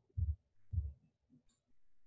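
Two short, dull, low thumps about half a second apart, then near quiet.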